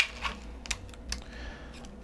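A 3D-printed plastic camera matte box handled in the hands: a handful of light, irregular clicks and taps of hard plastic.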